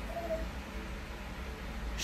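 A pet gives a short, high whine just after the start, then only faint low room hum.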